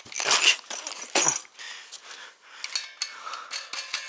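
Small metal parts clinking and plastic parts bags rustling as a box of e-bike kit hardware is handled, loudest in the first second and a half, then lighter scattered ticks.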